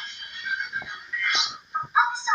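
Quiet, tinny speech and music from a small speaker with no bass, with short bursts of voice about one and a half seconds in and again near the end.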